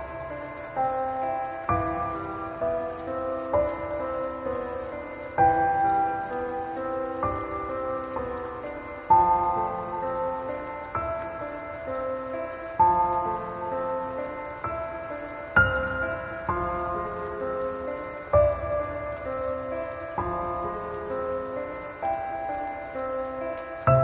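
Slow, calm solo piano music, a new note or chord struck every second or two and left to ring, over a soft steady hiss of rain.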